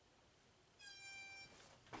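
Workout interval timer giving one steady electronic beep, under a second long, about a second in, marking the end of a 30-second work interval.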